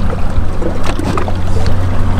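Mercury outboard motor idling: a steady low hum, with a noisy wash over it and a few faint ticks.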